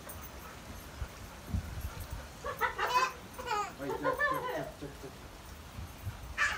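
Storm wind rumbling on the phone's microphone, with a couple of seconds of high, wavering whining in the middle.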